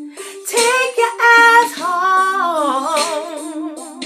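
A woman singing unaccompanied: a short run of notes, then a long held note that wavers and slides downward.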